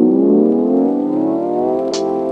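Synthesizer chord sweeping steadily upward in pitch, a rising build-up that levels off into a held chord near the end as electronic backing music begins.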